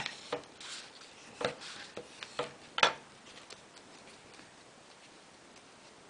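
Clear plastic shoehorn, used as a bone folder, rubbed and pressed along a fold in origami paper to set the crease: a few short scrapes and sharp clicks in the first three seconds, then only faint paper handling.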